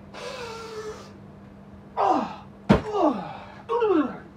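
A man's voice: a breathy drawn-out cry, then three short yelps about a second apart, each dropping steeply in pitch, with a sharp thud just before the second yelp.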